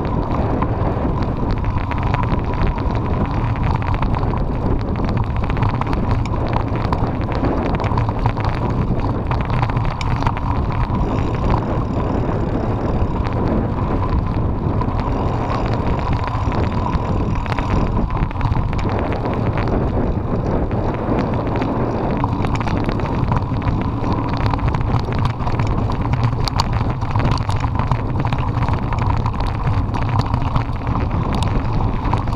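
Wind buffeting an action camera's microphone: a steady, loud rumble and hiss with no let-up.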